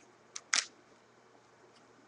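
Two quick clicks about half a second in, the second louder: a hard plastic card holder being picked up and handled.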